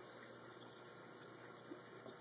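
Near silence: faint steady room hiss, with one tiny soft tick near the end.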